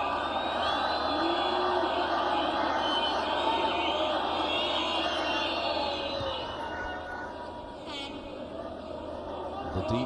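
Large rugby stadium crowd: a steady din of many voices with chanting. It eases somewhat past the middle and swells again near the end.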